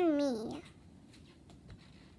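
A child's voice drawing out the end of a word, its pitch falling for about half a second. After that there are only faint soft clicks and rustles of a book's page being turned by hand.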